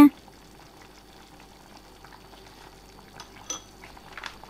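Faint bubbling of a pot of chicken curry simmering on the stove, with a small spoon clink about three and a half seconds in.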